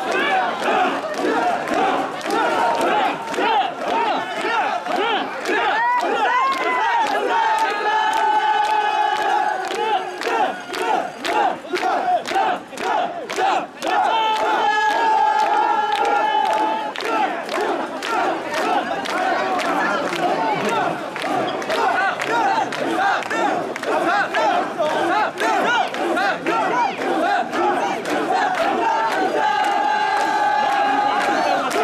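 Large crowd of mikoshi bearers shouting rhythmic carrying calls in unison while shouldering the portable shrine. Twice, about eight and fourteen seconds in, a long held tone rises over the chanting for two or three seconds.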